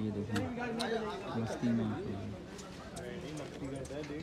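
Several men talking and calling out at once: indistinct chatter with no clear words.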